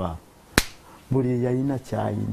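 A man speaking in short phrases, broken about half a second in by a single sharp click, the loudest sound here.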